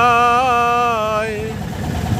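A voice singing one long held note with a slight waver, with no instruments, ending about a second and a half in. Underneath, a boat's engine drones steadily at low pitch and is heard alone at the end.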